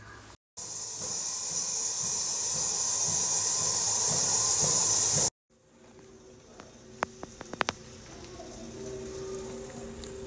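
A loud, steady hiss that grows louder for about five seconds and then cuts off abruptly. It is followed by quieter background noise with a quick cluster of clicks.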